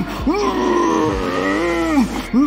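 A man's voice holding one long drawn-out note with even overtones. It starts with a short rising swoop about a third of a second in, sags slightly, and lifts again near the end, typical of a referee stretching out a start command before calling 'Go'.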